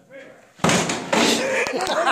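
A sudden loud bang about half a second in, followed by clattering and scuffling as people lunge after a loose squirrel indoors.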